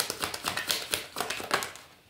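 A deck of tarot cards being shuffled by hand: a quick run of card clicks and flicks that fades out near the end.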